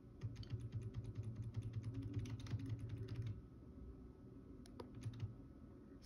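Rapid, faint clicking from computer controls as a web page is scrolled, about eight clicks a second for some three seconds. A few more isolated clicks follow near the end.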